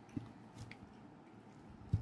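Quiet background with two short, soft knocks, one just after the start and one near the end, and a faint click between them.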